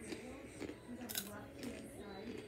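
Faint voices talking quietly, with a short sharp crackle about a second in.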